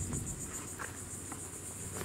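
Steady, high-pitched chirring of insects, with a low rumble underneath.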